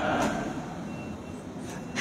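A break in the speech filled by steady low background rumble, with one faint, brief high-pitched beep about a second in.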